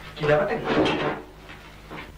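A wooden drawer sliding, about a second long, near the start.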